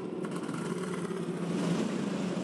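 Supercars racing cars' V8 engines running with a steady low drone, with no revving.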